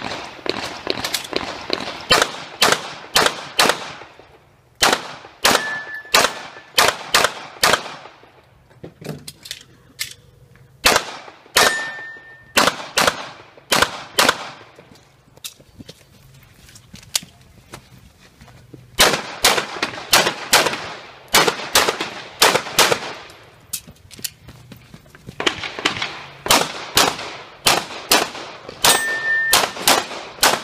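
Rapid strings of pistol shots as a competitor shoots a USPSA stage, several shots a second, broken by pauses of a few seconds as she moves between shooting positions. A short high ring sounds three times among the shots.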